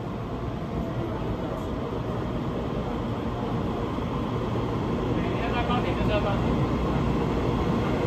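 A Taiwan Railway EMU3000 electric multiple unit pulling into an underground station platform, its running noise growing steadily louder as it approaches.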